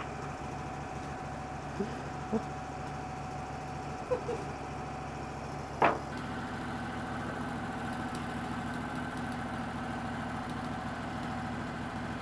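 Wood-Mizer LT15 WIDE sawmill's engine idling steadily between cuts, with a few brief light knocks, the loudest about six seconds in.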